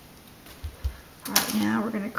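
Hands patting shredded cheese down in an aluminium foil pie pan, heard as two soft low thumps about two-thirds of a second in, then a woman starts talking.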